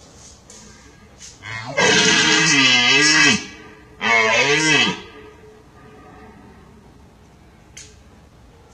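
Two deep, rough red deer rutting roars, the first about two seconds long and the second shorter, each sinking and rising in pitch.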